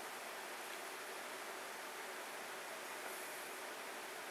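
Steady faint hiss with nothing else happening: room tone and microphone noise of a home recording.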